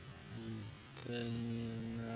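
A man humming a low note through closed lips behind his hand: a short hum, then a long, steady held hum from about a second in.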